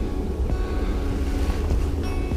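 Wind buffeting the microphone as a steady low rumble, with soft background music of held tones underneath.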